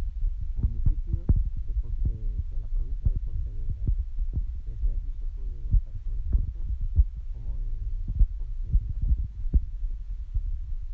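Wind buffeting the microphone: a constant low rumble broken by frequent short thumps.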